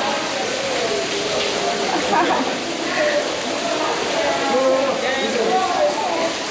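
People's voices talking and calling over one another, with a steady rush of stream water behind them.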